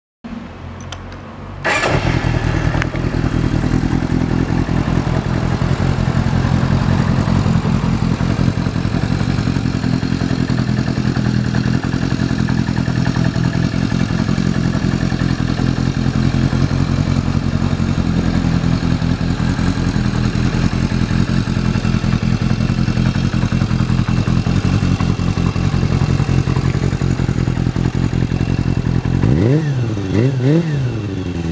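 Kawasaki Zephyr 400's air-cooled inline-four through a Yoshimura Cyclone muffler. The starter cranks for about a second and a half, then the engine catches and idles steadily. Near the end it is revved, the pitch rising and falling.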